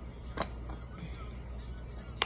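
Faint background music over a low steady hum, with a single sharp click about half a second in as the small camera's plastic hat clip is handled.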